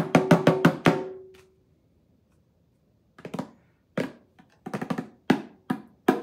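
A pair of wooden bongos struck with bare hands. It opens with a quick run of about six strikes whose ringing tone hangs briefly, then stops for about two seconds. A looser, uneven pattern of strikes follows.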